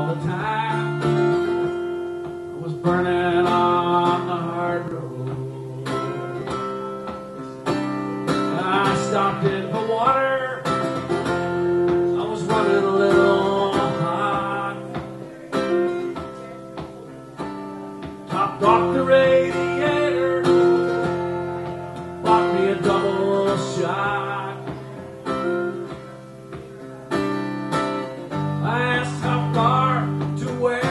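Acoustic guitar played live as an instrumental break in a country-folk song, in phrases that swell and fade every few seconds.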